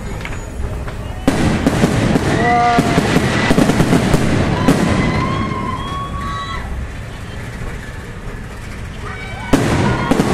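Aerial fireworks bursting: a sudden bang about a second in, followed by several seconds of dense crackling, then a quieter spell and another sharp bang near the end.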